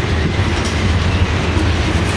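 Freight train of covered hopper cars rolling past: a steady low rumble of steel wheels on the rails.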